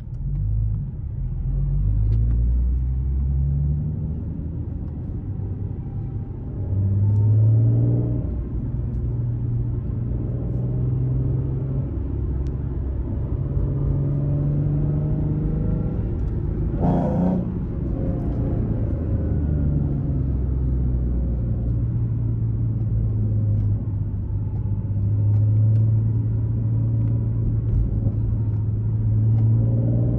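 Nissan 370Z's modified V6, heard from inside the cabin while driving: the low engine note rises and falls with throttle and gear changes, and pulls up louder about seven seconds in. A short sharp burst sounds a little past halfway.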